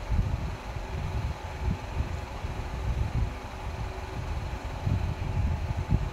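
Low, uneven rumbling noise with a faint steady hum underneath, between stretches of talk.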